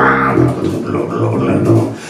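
Electric bass guitar played through a small amp, a bluesy riff of changing low notes that breaks off near the end.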